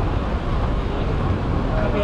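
Busy city street ambience: a steady rumble of traffic with people talking among passers-by.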